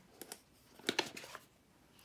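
A cardboard tarot deck box being handled and opened, its tray sliding out of the sleeve: a few short, light clicks and scrapes of card, the sharpest about a second in.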